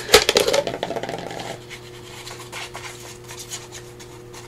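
Paper and card being handled: a few sharp taps and a rustle in the first second and a half, then quieter light handling, over a faint steady hum.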